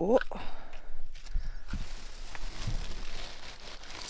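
Footsteps on stony, gravelly ground, a few soft scuffs and thuds.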